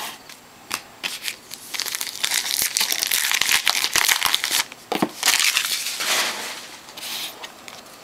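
Foil wrapper of a Topps Finest trading-card pack being torn open and crumpled, with a few sharp clicks first and then a dense crinkling for several seconds that tapers off near the end.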